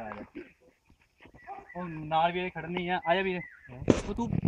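A man's voice, with a brief silence about half a second in, then two long, steady held tones in the second half.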